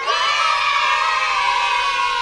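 An edited-in sound effect of a group of children cheering together, as in an excited 'wow!'. It starts suddenly and is held as one long cheer.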